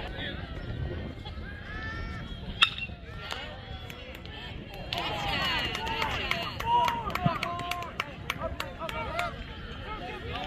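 A single sharp crack of a bat hitting a baseball about two and a half seconds in. Spectators and players are calling out throughout, and the voices swell into shouting a couple of seconds after the hit.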